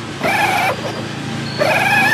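Battery-powered ride-on toy Jeep's electric motor and gearbox whining in two spells: a short one near the start, then one about one and a half seconds in that rises quickly in pitch and holds steady as the drive starts again with a low hum.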